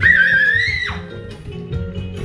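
A young child's high-pitched squeal, about a second long, climbing slightly and then dropping off sharply, over background guitar music.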